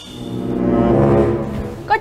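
A low, horn-like brass note used as a sound-effect stinger, swelling to a peak about a second in and fading away.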